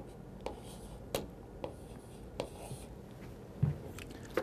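Chalk writing on a chalkboard: a few short taps of the chalk against the board with light scratching strokes between them. A brief low sound comes near the end.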